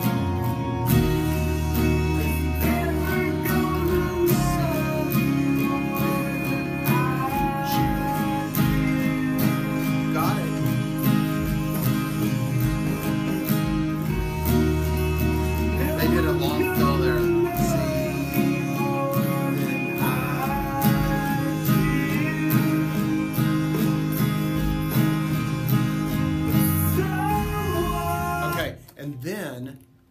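Acoustic guitar strummed steadily through a song's chord changes, with a man's voice singing along over it. The playing stops suddenly near the end.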